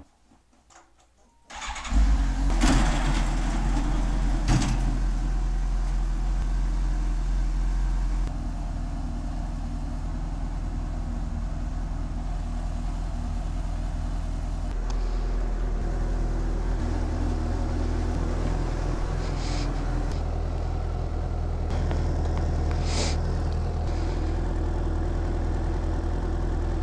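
A 2015 Suzuki GSX-S750's inline-four engine, its intake silencer removed, is started from cold about a second and a half in and then idles steadily. A few short knocks sound over the running engine.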